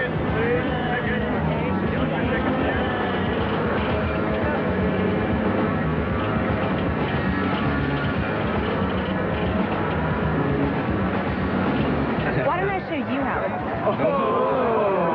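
Film soundtrack of a busy fairground: crowd chatter over steady background music, with a voice standing out near the end.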